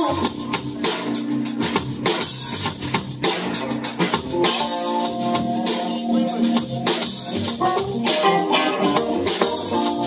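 Live rock band playing an instrumental passage: drum kit keeping a steady beat under electric guitar and keyboard, with no vocals.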